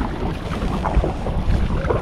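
Wind noise on the microphone, with light splashes of a kayak paddle dipping into the water.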